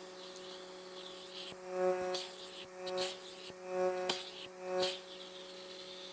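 Vacuum cupping machine humming steadily while its suction cup works on the neck. In the middle stretch the sound swells and fades four times, about once a second.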